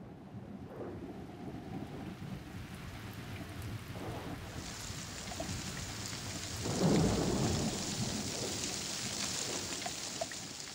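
Thunderstorm: steady rain with rolling thunder. The rain hiss grows louder about halfway through, and the loudest thunder rumble comes about seven seconds in.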